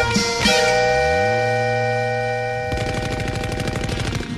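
Closing bars of a 1960s folk-rock song: a held final chord with the bass sliding up, then a fast, even rattle setting in about two-thirds of the way through.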